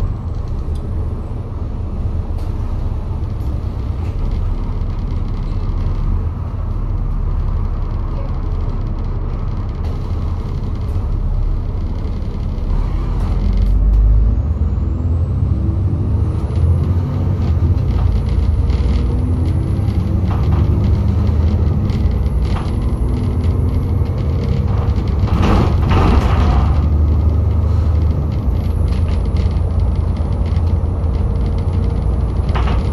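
Alexander Dennis Enviro400 double-decker bus's diesel engine idling at a stop, heard from inside on the upper deck. About halfway through it pulls away: the engine note rises and a high whine climbs above it, with a short louder rush of noise near the end.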